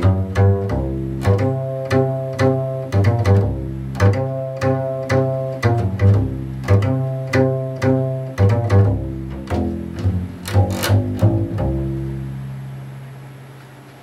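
1960 German laminated double bass strung with Spirocore strings, played pizzicato in a jazz line: plucked notes at about two a second, each with a deep, ringing sustain. Near the end the last note is left to ring and die away.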